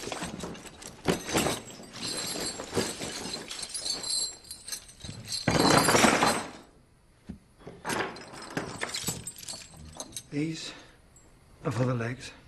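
Iron chains and shackles clanking and jangling as they are handled and set down on a dinner table among glass and crockery, with a loud clattering crash about six seconds in.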